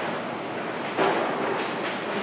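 Papers being handled and shuffled, a rustling noise that picks up again about a second in.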